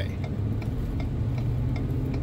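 Steady low drone of road and engine noise inside a moving car's cabin, with a few faint clicks over it.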